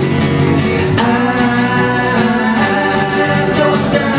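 Live acoustic folk music: strummed acoustic guitars under singing voices, with long held notes from about a second in.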